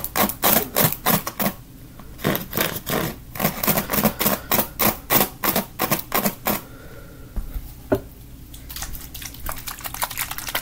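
Fingers flicking and scratching across the bristles of a plastic paddle hairbrush, crisp rapid strokes about four a second, with a short pause a second and a half in. The strokes stop about two-thirds of the way through, leaving quieter scattered handling sounds and one sharp click.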